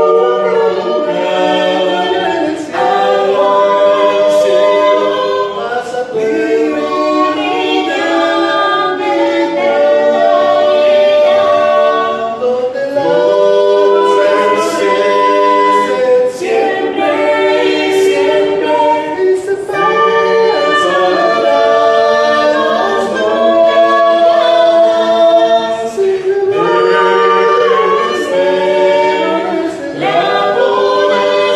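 A small group of men and women singing a hymn chorus a cappella, in harmony and without instruments, phrase after phrase with short breaks between them.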